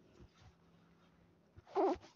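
Mostly quiet, then a single short vocal cry, like a meow, lasting about half a second near the end.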